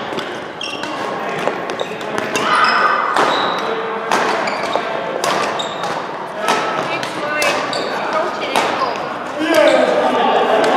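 Badminton doubles rally: repeated sharp racket strikes on the shuttlecock and footfalls on the court mat, with short high shoe squeaks, echoing in a large hall. Voices can be heard in the background.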